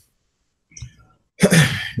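A moment of near silence, then about one and a half seconds in a man's sudden, loud, breathy vocal outburst.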